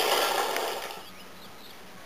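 A thin stream of mineral spring water splashing from a spout into a stone basin, fading out within the first second. Then quiet outdoor air with a few faint bird chirps.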